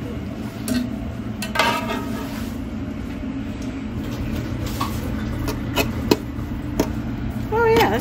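Kitchen work: scattered clinks and knocks of utensils and dishes, mostly in the second half, over a steady low hum, with brief voices in the background.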